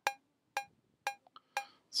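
Logic Pro X metronome sounding a sampled cowbell from UltraBeat (note G#2) at 120 bpm: four short metallic strikes, one every half second, each with a brief ring.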